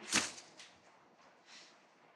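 A single short, sharp rustle of paper being handled, a page turned or pulled from a stack, just after the start, then near quiet.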